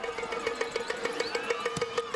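Music with a steady pulsing note under a busy melody.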